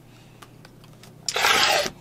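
Rotary cutter slicing through stacked layers of quilting fabric along a ruler slot onto the cutting mat: one short crunchy stroke near the end.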